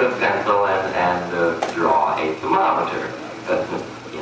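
A person's voice, speech-like but with no words made out, on a muffled old film soundtrack, with a single sharp click about a second and a half in.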